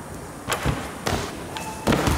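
Bare feet thudding on the floor in a short run-up, a few separate knocks, then a loud thud near the end as the gymnast strikes the springboard and comes down off the beam onto the mat.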